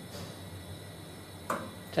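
Low steady background hiss, then a single sharp click about one and a half seconds in: the FlexiBurn flammability tester shutting off its gas test flame at the end of the flame application.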